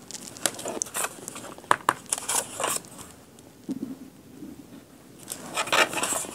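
Paper index cards and a clear acrylic stamping block handled on a cutting mat: a string of light taps, clicks and paper rustles, with a pause in the middle and more rustling as the cards are slid aside near the end.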